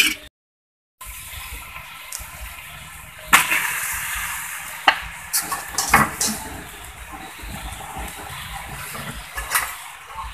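Food sizzling in oil in a hot wok, a steady hiss that gets suddenly louder about three seconds in and then slowly eases. A few sharp clinks of a metal spatula against the wok come through it. The sound cuts out to silence for a moment near the start.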